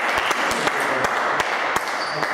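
Spectators applauding a won point in table tennis: a steady patter of clapping with a few sharper individual claps standing out.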